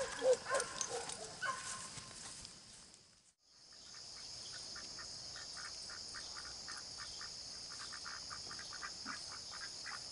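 Waterfowl honking a few times in the first three seconds. After a brief dropout comes a steady, high-pitched evening insect chorus with a quick chirp repeating about three times a second.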